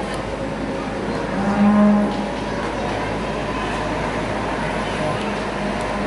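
Steer mooing: one short, low call about a second and a half in, and a fainter, longer call starting near the end, over steady arena background noise.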